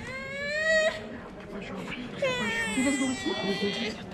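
Baby crying: a short rising wail in the first second, then a longer wail from about two seconds in.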